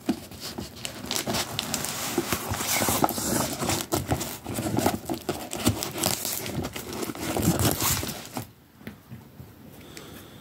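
Packing tape being peeled and torn off a cardboard box, with the cardboard flaps scraping and rustling under the hand; the noise dies down about eight and a half seconds in.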